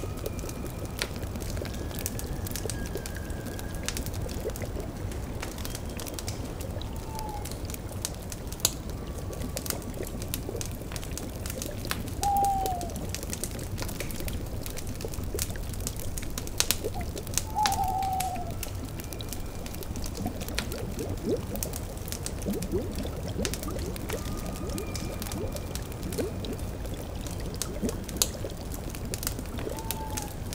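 Layered ambience of a bubbling cauldron over a crackling wood fire: a steady liquid bubbling with scattered sharp fire pops. Four short, downward-sliding owl hoots sound through it, and faint held music tones drift in and out.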